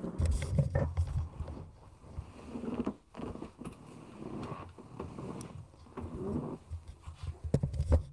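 Chair creaking and groaning under a man shifting his weight, a low noise that sounds like farting.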